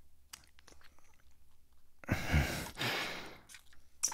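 Close-up wet mouth sounds of kissing and sucking on skin: soft lip smacks and clicks, then a long breathy exhale with a low voiced hum about two seconds in.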